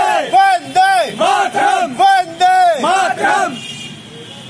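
A small group of men shouting slogans in chorus: a quick run of short, loud shouted cries, several a second, that die away shortly before the end.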